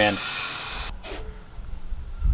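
Paracord rubbing and sliding against itself as a barrel knot is tied and drawn tight: a short hiss, then a brief rasp about a second in.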